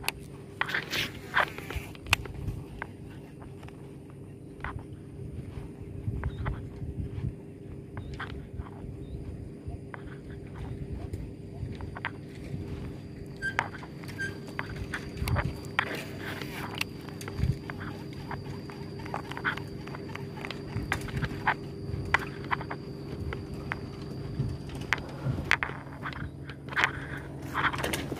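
Steady engine hum of an aquatic weed-harvester boat running, with a faint high whine joining about halfway. Scattered footsteps and short knocks of someone moving along a muddy bank sound close by.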